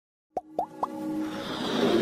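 Animated logo intro sound effects: three quick pops about a quarter second apart, each rising in pitch, followed by a swell that builds in loudness, the start of electronic intro music.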